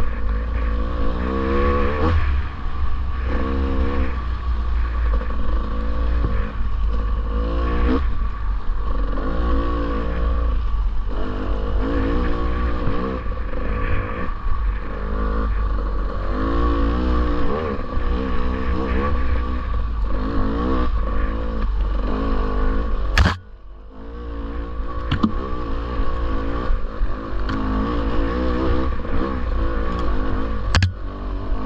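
Dirt bike engine revving up and down as the bike is ridden along rough singletrack, with heavy rumble of wind and buffeting on the helmet-mounted microphone. About two-thirds of the way through there is one sharp knock, and the engine sound drops away for a moment before picking up again.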